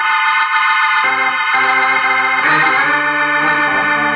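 Radio-drama organ bridge between scenes: a loud sustained chord that comes in sharply, with more notes added about a second in and again halfway through.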